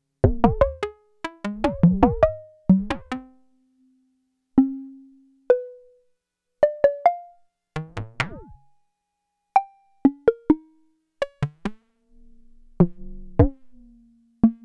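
Electronic 'Buchla bongo' from a Eurorack modular synthesizer: a Make Noise Dual Prismatic Oscillator with frequency modulation, struck through an Optomix low-pass gate and played by fingers on Pressure Points touch plates. It gives an irregular series of short, pitched percussive hits at varying pitches, each ringing briefly and dying away fast. A cluster of hits about eight seconds in bends downward in pitch, and a faint held tone sounds near the end.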